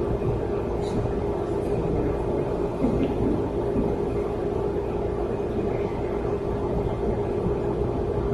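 Room tone: a steady low rumble with a constant hum, and a faint click about a second in.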